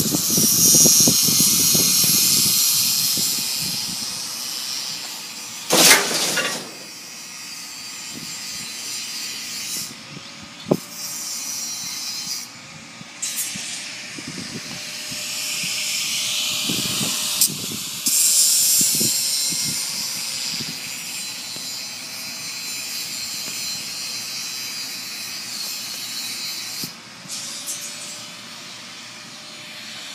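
A loud hissing noise that swells and drops away sharply several times, over a faint, wavering engine-like hum, with a few short knocks.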